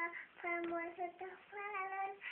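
A young child singing a simple song in a high voice, holding each note briefly.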